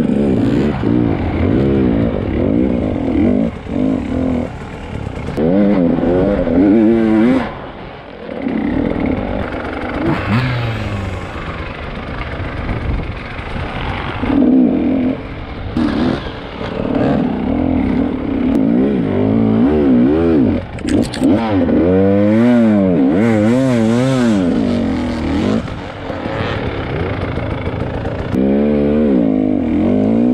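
KTM 300 EXC two-stroke enduro motorcycle engine revving up and down again and again under blips of throttle while climbing and descending rough dirt, with short drops in level about a third of the way in and again near the end.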